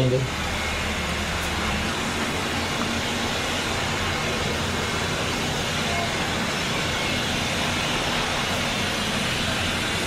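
Steady, even outdoor noise, a constant hiss with no distinct events.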